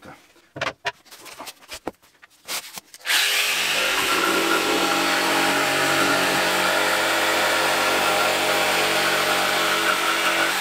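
A few knocks and clicks as a board is laid down, then about three seconds in a jigsaw starts suddenly and runs at a steady pitch while its reverse-tooth (down-cutting) Wolfcraft blade cuts through 18 mm laminated fire-resistant particleboard, a denser board than usual.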